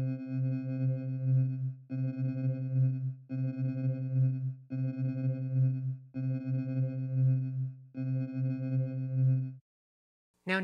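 Dawesome MYTH software synthesizer holding one low note from a resynthesized sample, its playback position swept over and over by a ramp LFO. The sound repeats about every 1.4 seconds, and each cycle ends in a short gap where the sweep reaches the end of the sample. It stops shortly before the end.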